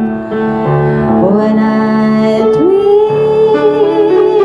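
A woman singing a slow ballad through a microphone and small amplifier, with piano accompaniment; her voice slides up into long held notes about a second in and again just before three seconds.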